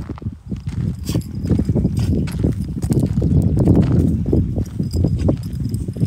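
Wind buffeting a phone microphone outdoors, an uneven low rumble, with scattered thumps of footsteps through grass.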